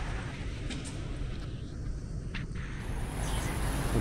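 Steady city street ambience: an even background rumble of traffic, with no single distinct event standing out.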